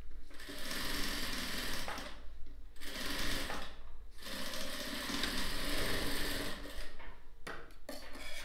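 Industrial lockstitch sewing machine running as it stitches fabric, stopping briefly twice, a little past two seconds and near four seconds, then resuming. Near the end it stops, with a few sharp clicks.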